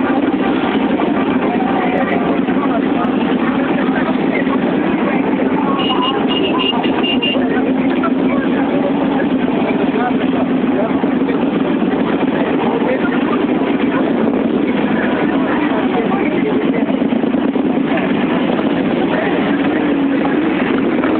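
Several motorcycle engines running together at low revs, a steady drone as the bikes idle and creep forward, with crowd voices under it.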